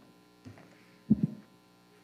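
Faint, steady electrical mains hum in the microphone feed, broken by two brief low sounds about half a second and a second in, the second one the louder.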